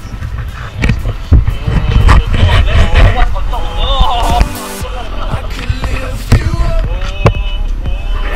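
Rumbling and sharp knocks from an action camera on a selfie stick being swung around and handled, with music and snatches of voices under it.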